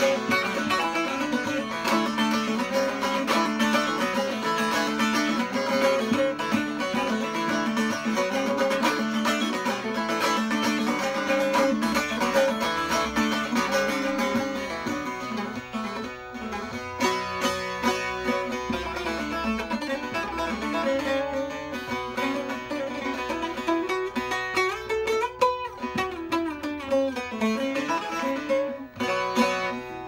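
Long-neck bağlama (saz) played solo: busy, dense playing for the first half, then a sparser melodic line with some sliding notes. It is played up and down the neck to show that the freshly finished instrument sounds clean, with no fret buzz.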